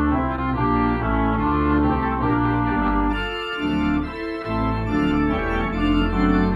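Theatre-style electronic organ playing a piece with sustained chords, a melody line on top and a bass line beneath. The bass briefly drops out twice a little past the middle.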